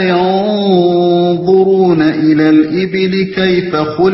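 Quran recitation in Arabic: a single voice chanting a verse in long, held melodic notes that glide slowly up and down.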